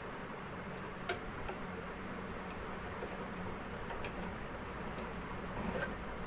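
Cloth being handled at a sewing machine: a sharp click about a second in, a brief rustle about two seconds in, and a few small clicks later, over a steady low hum. No stitching rhythm is heard.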